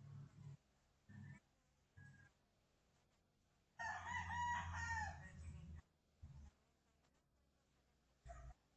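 A single pitched animal call about two seconds long, starting about four seconds in, with a few short faint sounds before it.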